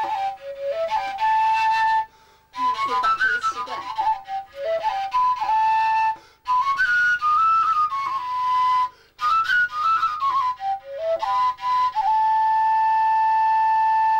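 Norwegian willow pipe (seljefløyte), an overtone flute with no finger holes, being played: four short phrases of quick notes running up and down, each settling on a held note, the last held for about three seconds.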